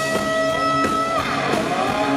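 Live hard-rock band playing an instrumental passage, led by electric guitar. The guitar slides up into a long held high note that drops away after about a second, with drums and bass driving underneath.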